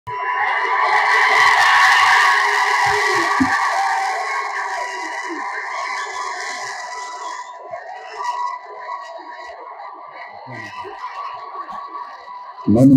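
Crowd cheering in a hall, loudest in the first few seconds and dying away over about seven seconds.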